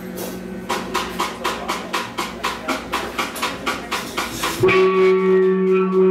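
A live rock band kicking off a song: an even run of sharp percussive strokes, about four a second, then near the end electric guitars come in with a loud, sustained ringing chord.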